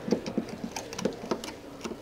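Light, irregular clicks and taps of Drummond test lamp probe tips touching the metal terminals of an electricity meter, about ten in two seconds.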